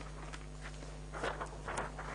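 A few faint footsteps over a steady low electrical hum.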